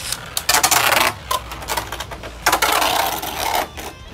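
Cho-Z Valkyrie and Dread Hades Beyblade spinning tops clashing and scraping around a plastic Beyblade Burst stadium: rapid clicking hits, with a short burst of clattering collisions about half a second in and a longer one past the middle.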